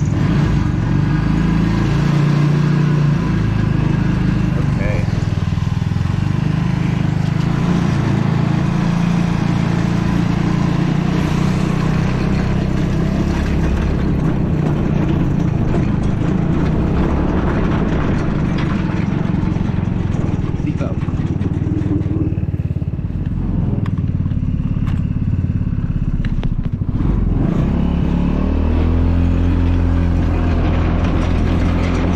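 Helix 150 go-kart's 150cc four-stroke engine running as the kart is driven, its pitch rising and falling with the throttle; it eases off for a few seconds past the middle and revs up again near the end. It is running on its own fuel supply now that the vacuum petcock's lines are connected the right way round.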